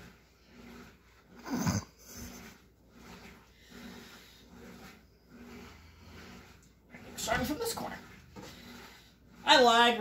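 Fabric rustling as a large piece of cloth is lifted off the sewing table and rearranged, with two short louder swishes, one about two seconds in and one about seven and a half seconds in. A man starts speaking near the end.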